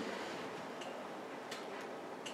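Quiet room hiss with a few faint clicks.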